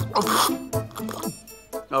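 A man coughing on a sip of juice, over background music.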